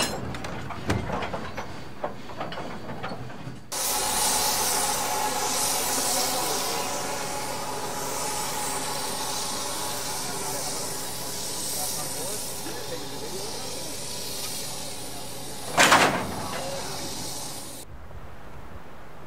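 A few metal knocks, then a sudden, loud, steady hiss of compressed air venting from the train's air-brake line at the coupling between the locomotive tender and the boxcar. A short, louder burst comes near the end.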